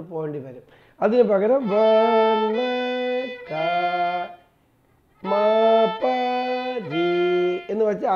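Violin bowed in Carnatic style: two short phrases of held notes, each phrase stepping from one pitch to the next, with a gap of about a second between them.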